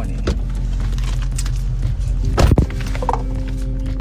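Music playing on a car stereo over the cabin's low hum, with one loud, brief thump about two and a half seconds in.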